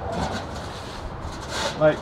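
Large sheet-metal pipe being set down onto a steel flange: a short scraping rub of metal on metal about one and a half seconds in, over a low rumble.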